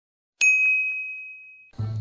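A single bright ding sound effect, struck about half a second in, ringing down for a little over a second and then cut off. Near the end a low hum comes in.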